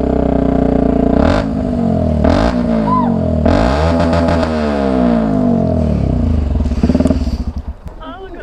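Motorcycle engine, just started, running and revved up and down several times with rising and falling pitch, then dropping away near the end.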